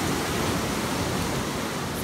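Shore-break surf washing up over wet sand: a steady, even rushing of foamy water.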